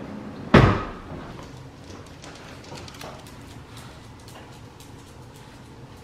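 A single heavy thud about half a second in, sharp at the start and dying away quickly, followed by faint scattered clicks and taps.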